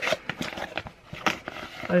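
Cardboard sock packaging being handled and pulled open: a scatter of small clicks and rustles, with quiet talk over it.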